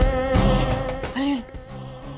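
Dramatic TV background score: a sustained buzzing drone over regular beat hits, thinning out and dropping in level about a second in, with a few short sliding tones near the end.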